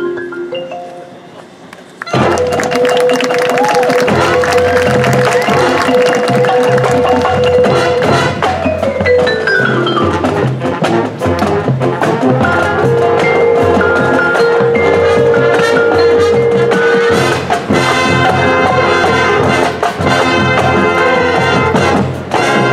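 High school marching band playing. A soft passage fades at the start, then about two seconds in the full band comes in loudly with brass, drums and marimbas, and keeps playing to the end.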